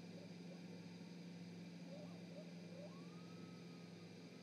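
Near silence: a steady low electrical hum on the live-cam audio, with a few faint distant chirps and a thin whistle-like tone that rises and then holds near the end.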